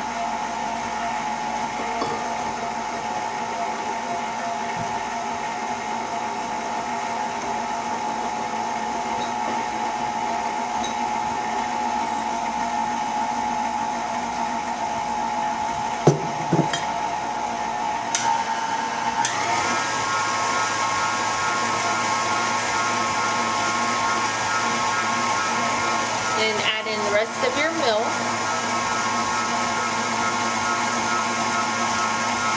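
Electric stand mixer running with its whisk attachment, beating cupcake batter in the bowl. Its steady motor hum steps up in pitch about two-thirds of the way through, and a few knocks fall just before that.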